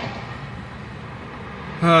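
Steady car-cabin noise heard from inside the car: an even, featureless hum, with a man's brief "uh" near the end.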